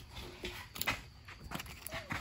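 Rubbing and a few light knocks as a lugged mud tire is rolled and set onto a scale, with handling noise from a hand close to the phone's microphone.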